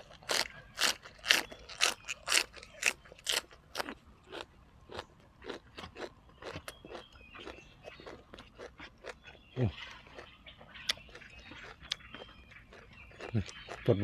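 Close-up chewing of crisp raw water spinach (morning glory) stems: loud crunches about twice a second for the first four seconds, then softer, irregular chewing.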